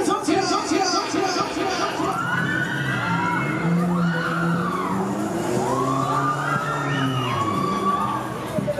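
Siren-like wailing sound effect over the fairground ride's loudspeakers, sweeping slowly up and down in pitch in several overlapping wails, with a fast warbling pulse in the first second or so.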